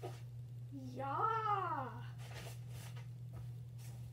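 A boy's drawn-out shout of "Yeah!", rising then falling in pitch, over a steady low hum. A few brief rustles follow.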